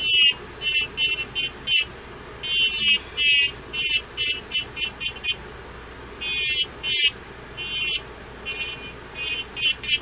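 Electric nail file (e-file) running, its bit grinding around the cuticle and sidewall of a fingernail: a high whine that comes and goes in short bursts as the bit touches and lifts off the nail, over a steady low motor hum.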